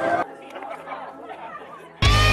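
Indistinct chatter of several people talking at a low level, after a closer voice breaks off a moment in.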